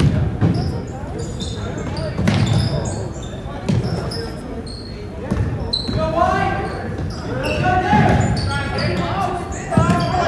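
Basketball bouncing on a hardwood gym floor, with short high sneaker squeaks and players' shouts echoing in the gym. The shouting grows louder about six seconds in as play runs up the court.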